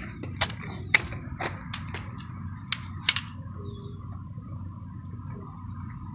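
Scattered sharp clicks and knocks of a phone being handled while walking, over a low background rumble, with a faint thin steady tone from about a second in.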